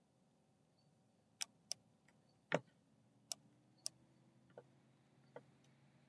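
About seven short, sharp clicks from a computer mouse and keyboard, spread over roughly four seconds, the third one loudest. Between the clicks it is near silent.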